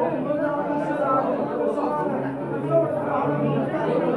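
Several people talking at once: overlapping chatter of a small gathering, with no one voice standing out.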